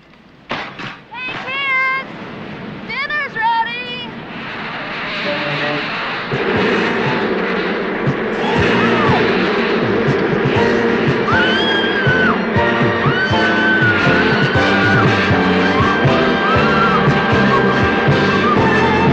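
Film soundtrack of a bee swarm attack: a dense swarm buzz that builds over the first several seconds into a thick steady drone, with shrill arching cries and music over it.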